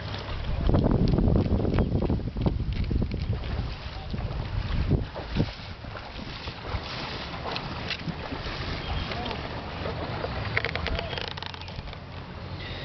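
Wind buffeting the microphone, loudest in the first few seconds, with scattered short clicks and scrapes of a filleting knife cutting into an American shad on a wet wooden board.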